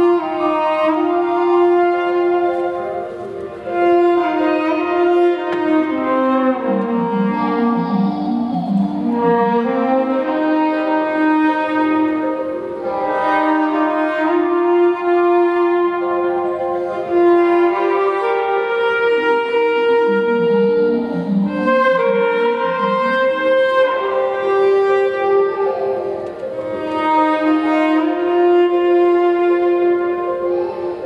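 A jazz orchestra with bowed strings and horns playing slow, held chords that change every few seconds, while a lower line sinks and climbs twice.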